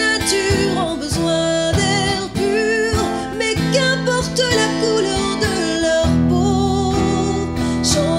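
A woman singing, accompanying herself on a strummed acoustic guitar.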